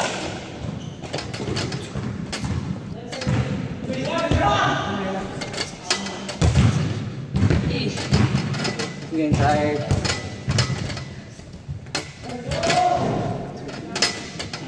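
Indistinct talking mixed with repeated thuds of hands and feet on a wooden floor and on a free-standing pull-up bar, as people do pull-ups and push-ups.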